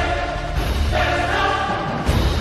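Music with a choir singing long held notes over a steady low accompaniment.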